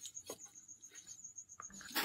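Faint, high-pitched trill pulsing rapidly and steadily in the background, with a few soft clicks.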